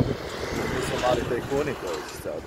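A voice talking over traffic noise: a steady hiss of a passing vehicle in the first half, then short spoken sounds toward the end.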